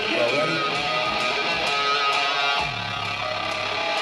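Metalcore band playing live, led by electric guitar with bass underneath; a low note slides down about two and a half seconds in.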